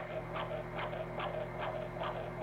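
Baby's ultrasound heartbeat recording playing from a sound box inside a stuffed toy: fast, even beats about two and a half a second, over a steady low hum.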